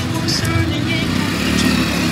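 Hero Honda motorcycle's single-cylinder engine running as the bike moves off, under background music.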